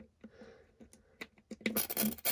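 Small plastic clicks and scratching of a blade fuse being pushed into the slot of a plastic fuse block. There are a few separate clicks over the first second and a half, then a denser, scratchy rattle near the end.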